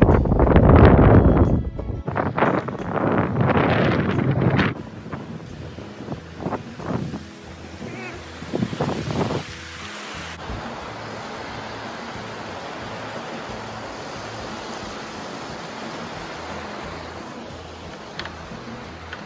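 Wind buffeting the microphone in loud gusts for the first few seconds. About ten seconds in, it gives way to the steady rushing of a shallow creek flowing over the rocks of a stone-lined channel.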